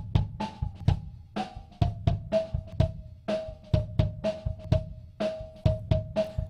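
A close-miked kick-drum track, recorded with the mic inside the drum, plays a drum pattern with snare and cymbal spill, about three or four hits a second. A narrow EQ boost sweeps down through it and brings out a pitched, cowbell-like ring over each hit. The ring slides down from about 850 Hz and settles, strongest, near 640 Hz. It is the drum shell's internal-reflection resonance, being tuned in so it can be notched out.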